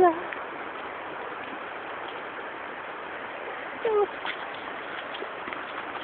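River water rushing over rapids, a steady even noise. About four seconds in, a person's voice gives one short call with a falling pitch.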